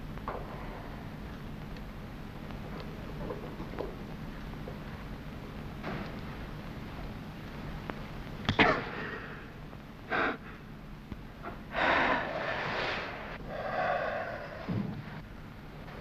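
A sharp snip as a fuse wire is cut, a little past halfway, over a steady low soundtrack hum with faint small clicks. A man's heavy exhales and a sigh of relief follow.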